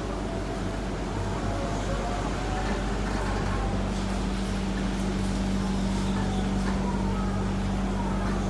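Cabin noise of a Sentosa Express monorail car running between stations: a steady rumble and hum, with a steady low tone that joins about halfway through.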